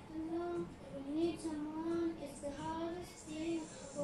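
A child singing a slow song in long, held notes, along with a quiet karaoke backing track.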